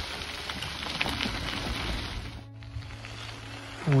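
Bicycle tyres rolling over a gravel trail: a steady crackling, gritty noise mixed with wind on the microphone. It breaks off briefly about two and a half seconds in, then carries on.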